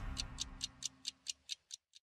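Ticking clock sound effect ending a TV programme's closing jingle: even ticks about four to five a second that grow fainter, over the last low notes of the theme music, which die away about one and a half seconds in.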